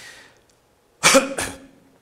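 A man's short intake of breath, then a loud, sudden cough about a second in.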